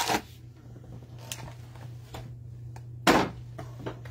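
Cardboard box of cello-wrapped trading-card packs being handled and moved: a few light taps and rustles, then one louder bump with a rustle about three seconds in, over a steady low hum.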